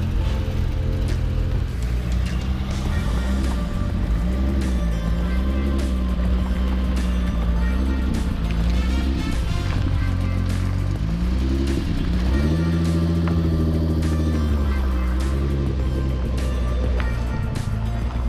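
Venturi 260 LM's turbocharged V6 revving up and easing off in pitch as the car pulls away, mixed with background music with a steady beat.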